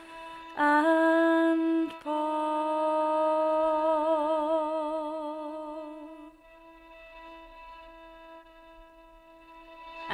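A woman singing a traditional carol, holding long, drawn-out notes with vibrato. About six seconds in, the singing drops to a much quieter held tone.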